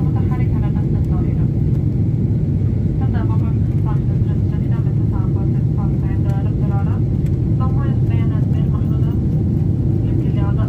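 Steady low roar inside a jet airliner's cabin at cruise, the engine and airflow noise holding even, with a voice talking over it.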